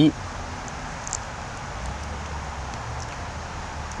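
Steady outdoor background noise: an even hiss with a low rumble underneath, and a couple of faint clicks about a second in.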